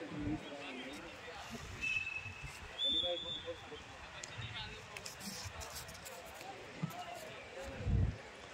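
Voices chatting in the background, then a single dull thud near the end as the thrown shot put lands on the packed dirt.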